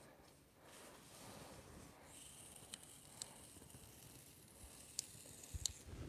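Faint hiss of masking tape being pulled off the roll and pressed along a car's sheet-metal body panel, with a few light ticks.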